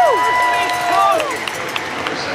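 Stadium public-address announcer calling out a player's name in the starting-lineup introductions, echoing over crowd noise. The drawn-out voice holds, then slides down and stops a little over a second in.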